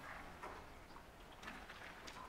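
Faint scattered clicks and soft rustling of a laptop and sheets of paper being handled at a lectern.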